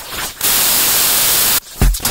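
A loud, steady burst of white-noise static within an electronic techno track, lasting about a second before cutting off suddenly. Heavy bass kicks drop in just before the end.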